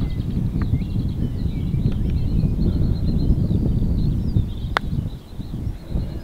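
Wind buffeting the microphone in a steady low rumble, with faint bird chirps above it. A single sharp click near the end is a putter striking a golf ball.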